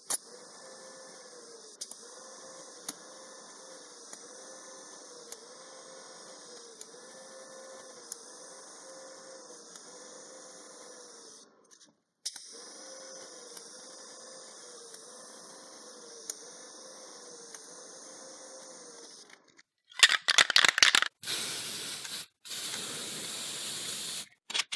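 TIG welding arc on the go-kart's tubular frame, a steady hiss and buzz with a slow regular pulse, broken once for a moment about halfway. In the last few seconds it gives way to louder, rougher hissing in short bursts.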